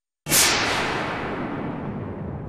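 A dramatic whoosh sound effect that hits suddenly about a quarter second in and then fades away.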